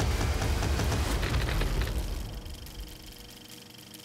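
Dramatic documentary sound design: a heavy low rumble with scattered crackles, fading away over the last two seconds into a faint held tone.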